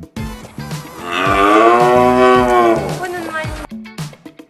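One long farm-animal call lasting about two seconds, its pitch rising and then falling, heard over background music.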